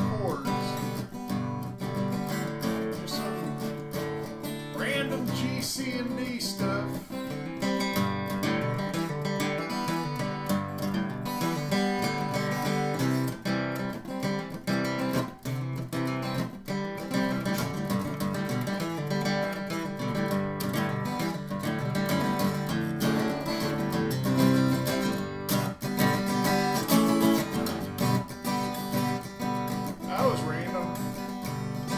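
Acoustic steel-string flat-top guitar strummed in a steady rhythm, playing a simple G, C and D chord progression.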